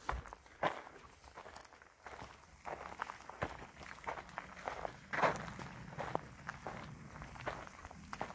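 Footsteps walking on a dry dirt track, a slow, uneven run of steps.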